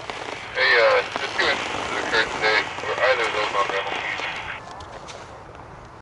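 A person's voice calling out in several short loud bursts over a steady hiss, which stops about four and a half seconds in.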